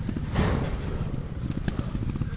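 Trials motorcycle engine idling, a rapid, even low pulsing.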